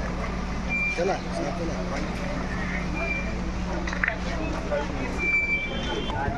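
Steady low hum of a running vehicle engine under the murmur of a walking crowd, with three short high beeps about two seconds apart.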